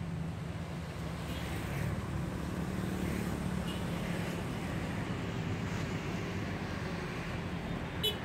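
Road traffic going past: a steady low rumble of car engines and tyres.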